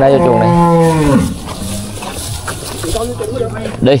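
A young black calf mooing: one long, steady, low call that ends about a second in.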